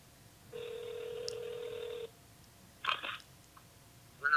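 Telephone ringback tone heard through a mobile phone's speaker as an outgoing call rings: one steady ring about a second and a half long, followed by a short, louder sound about three seconds in.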